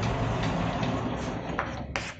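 Sliding lecture-hall chalkboard panels running along their track: a steady rumble that stops at the end.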